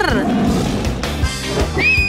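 A growling animal roar sound effect, starting with a falling cry and rumbling for about a second, over upbeat background music.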